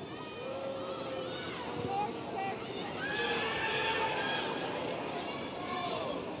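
Football stadium ambience: a steady background of crowd noise, with distant shouted voices from across the ground rising and falling throughout.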